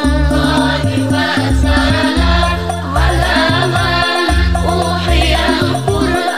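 A sholawat (Islamic devotional song) sung by a female voice with wavering, ornamented melodic lines over an arranged backing track with a bass line.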